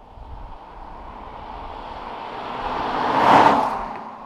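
A car, the Holden Caprice V, driving past at speed: its road noise swells steadily to a loud peak about three seconds in, then fades away.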